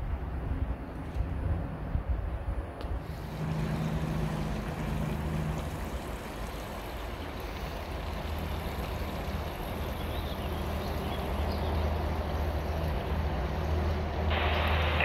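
Steady outdoor rushing noise with a low hum underneath, the kind made by wind or running water.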